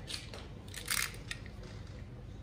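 Handling noise from a cut piece of shielded audio cable and things on a table: a few short scrapes and rustles, the loudest about a second in, over a steady low hum.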